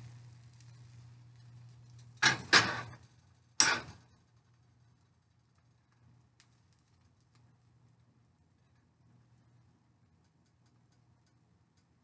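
A metal frying pan being handled on an electric coil stove: three sharp clatters about two, two and a half and three and a half seconds in, then very quiet with a few faint ticks.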